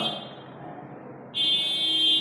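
A steady, high-pitched electronic buzzer tone comes in suddenly about a second and a half in and holds. Before it there is only faint room noise.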